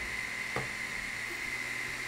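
Creality Ender 3 V2 3D printer's power supply fan and hot end cooling fan running with a steady hiss and a faint steady high whine. The printer is homing on its silent stepper drivers, and the motion adds little over the fans: pretty quiet.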